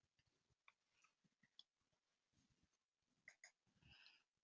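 Near silence, with a few faint mouse clicks, two of them close together near the end.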